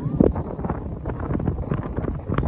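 Wind buffeting the microphone: an uneven low rumble broken by many short pops.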